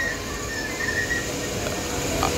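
A Cairo Metro Line 1 train alongside the platform giving a thin, high squeal that comes and goes in the first second or so, over a low, steady rumble.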